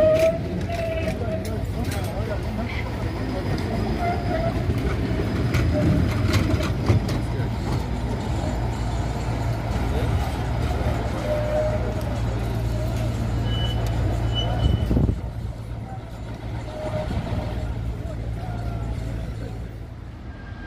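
71-623 (KTM-23) tram moving slowly through a turning loop, a steady low running hum with wavering tones above it. About three-quarters of the way through the sound drops suddenly to a quieter outdoor background.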